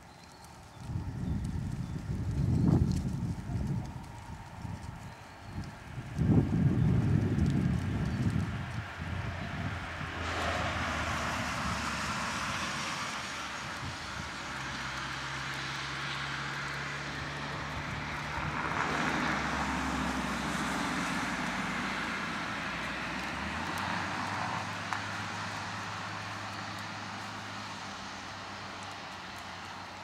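Two loud low rumbles in the first nine seconds, then a distant engine droning steadily from about ten seconds in, its low hum dropping in pitch a little past the middle and slowly fading toward the end.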